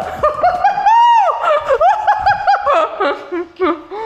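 High-pitched laughter: a quick run of short rising-and-falling squeals, with one longer held note about a second in.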